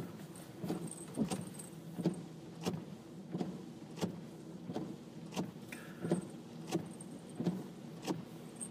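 A car's blinker flasher ticking steadily inside the cabin, about three even ticks every two seconds.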